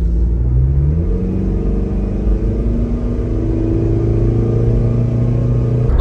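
Mazda Bongo Friendee's turbo-diesel engine heard from inside the cabin, pulling in sport mode S2. Its pitch rises about half a second in, then climbs slowly and steadily as the van gains speed.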